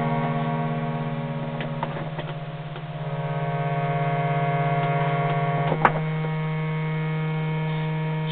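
Hand-pumped harmonium holding a steady low drone under sustained reed chords. The upper notes change about two seconds in as the volume dips and swells back, and there is a single brief click near six seconds.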